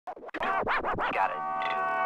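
Intro music opening with DJ turntable scratches: a few quick sweeps bending up and down in pitch, then settling onto a steady held chord.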